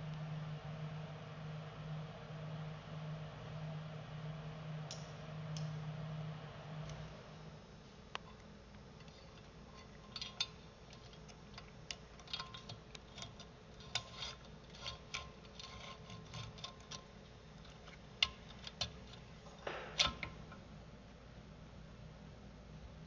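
For the first seven seconds or so, a steady low hum that wavers slightly, from the bench-tested DC gear motor being run through the new controller board by radio control. After that come scattered light clicks and small metallic knocks as wires and parts are handled on the mower's steel frame, the loudest knock near the end.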